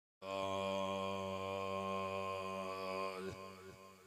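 A man's chanting voice through a microphone and loudspeaker, holding one long, steady low note, which falls away and fades about three seconds in.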